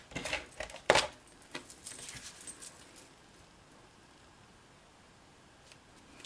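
Card stock being handled and pressed together on a tabletop: light rustling and a few taps in the first few seconds, the sharpest tap about a second in.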